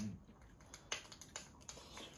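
A few short, soft clicks of chopsticks against a small bowl while eating, after a brief closed-mouth "mm" at the start.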